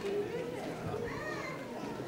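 Quiet murmur of young children's voices and audience chatter, with one child's voice rising and falling faintly about a second in.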